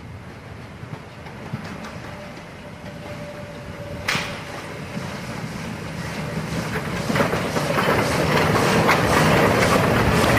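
Harz narrow-gauge 2-10-2 tank steam locomotive 99 7222 approaching and passing close by with its train, growing steadily louder. There is a sharp click about four seconds in, and from about seven seconds on a fast, loud rhythmic clatter as the engine draws level.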